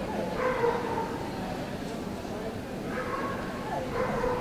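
A dog whining in long, drawn-out cries that slide down in pitch, twice, once at the start and again near the end, over the murmur of voices in a large hall.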